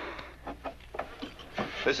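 A short pause with a few faint clicks, then a man starts speaking into a radio handset near the end.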